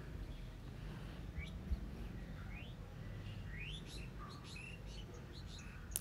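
Faint bird chirps: a handful of short, high calls rising in pitch and scattered through a quiet stretch, over a low steady hum.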